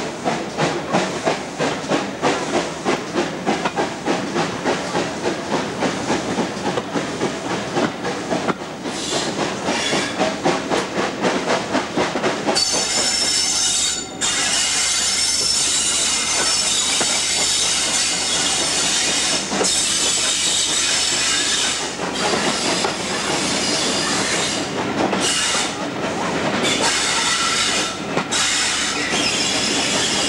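Steam-hauled heritage train pulling out of a station and running through woods, heard from a carriage window: quick regular beats for about the first twelve seconds, then a steady rushing hiss that drops out briefly a few times.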